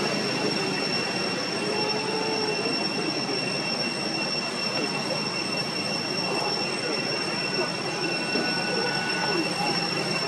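Steady outdoor ambience: a constant high drone holding two pitches over a wash of noise, with a few faint, short wavering calls rising above it now and then.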